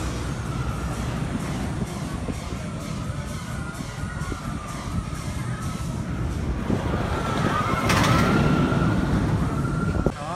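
Steel roller coaster train running along its track, with riders' screams rising and falling above the rumble. It grows loudest from about seven seconds in.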